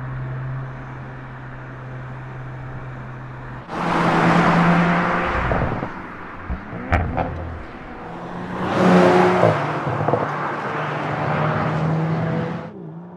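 Audi RS 4 Avant's twin-turbo V6 with sport exhaust: a steady drone, then a loud surge of acceleration about four seconds in that drops away, a few sharp cracks around seven seconds, and a second surge near nine seconds that settles back into a steady run.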